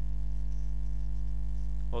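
Steady electrical mains hum with a stack of even overtones, running under the recording with no other sound standing out.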